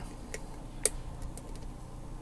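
Faint, irregular metallic ticks of a thin steel hook pick working the spool pins and warding inside a Burg-Wächter Gamma 700 padlock under tension, with one slightly louder click about halfway in.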